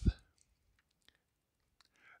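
A few faint, scattered clicks in near quiet, after a short low thump at the very start.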